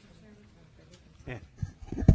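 Quiet room tone, then a person's voice speaking briefly and faintly, beginning past the middle and again just before the end.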